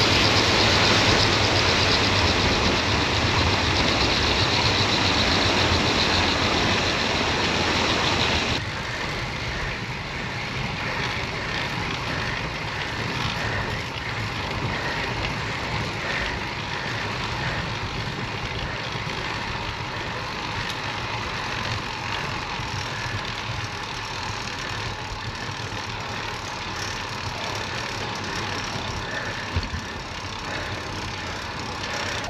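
Steady rush of wind noise on a camera moving at cycling speed with a track bike. The rush is loud for the first eight seconds or so, then drops suddenly to a lower, steady level.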